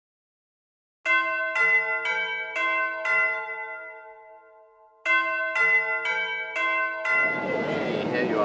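A set of bells or chimes struck five times in quick succession, about two strokes a second, left to ring and fade, then the same five strokes again. Near the end the chime gives way to the noise of a busy hall.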